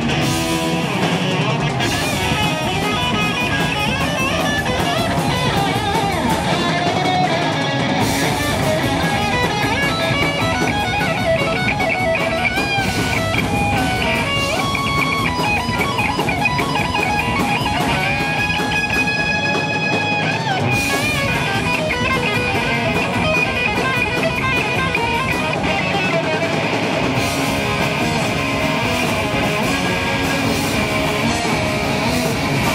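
Heavy metal band playing live: distorted electric guitars, bass guitar and drum kit, with some long held notes about two-thirds of the way through.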